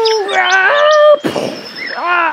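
A child's voice giving a long, high wordless cry, held for over a second, dipping and then rising in pitch before it breaks off, followed by a short burst of noise.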